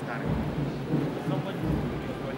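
Indistinct murmur of a large indoor crowd, with faint voices and several low, dull rumbles underneath.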